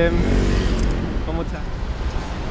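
Steady road traffic noise of cars on a city street, a continuous low hum with no single loud event.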